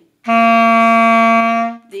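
Clarinet playing a single held note, a written C, sustained steadily for about a second and a half before stopping.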